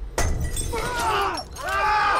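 A sudden crash, then a man's anguished cries and screams in long wavering wails.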